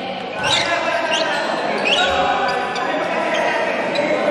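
Sneakers squeaking on an indoor court floor: three short rising squeaks in the first two seconds and a few fainter ones after. Players' and onlookers' voices echo in the gym hall throughout.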